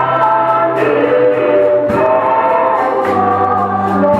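Gospel worship singing: a man leading the song on a microphone with a group of voices, over held bass notes and a steady beat. The bass note changes twice, about two and three seconds in.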